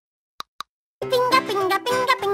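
Two quick cartoon pop sound effects in close succession, then, about a second in, bright children's cartoon music begins.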